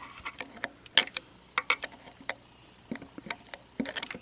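Irregular light metallic clicks and taps of a screwdriver working in the bearing cup of an air conditioner fan motor's end bell, picking at the washers there.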